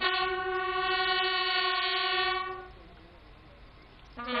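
Military bugles sounding a ceremonial call: one long, held note, entered from a short lower note, that fades away about two and a half seconds in.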